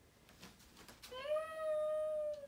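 A young girl's voice: one long, high held vocal sound that starts about a second in with a slight rise and then stays on one pitch, after a few faint clicks.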